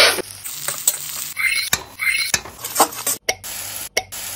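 Sliced onions, garlic and green chilli sizzling in hot oil in an iron wok, stirred with a metal spatula in a few strokes.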